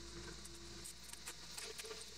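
Pressure-washer surface cleaner spraying on a concrete driveway, heard as a steady hiss with light patter and ticks of water.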